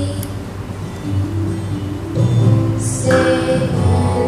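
Music: an instrumental accompaniment with a steady bass, and a girl's solo voice singing into a microphone that comes in strongly about three seconds in.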